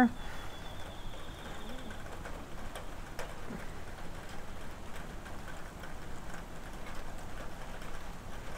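Quiet outdoor background with faint bird calls: a thin high trill over the first two seconds, then a short low call.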